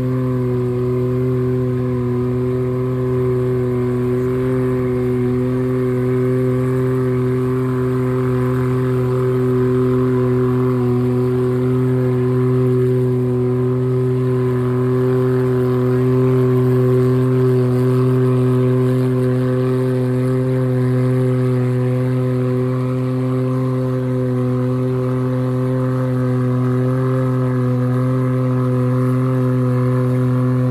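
An engine running at one steady, unchanging speed, a low pitch with many overtones that neither rises nor falls.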